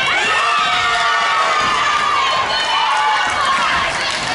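Volleyball players and onlookers shouting and cheering, many high voices at once, as the team celebrates winning a point.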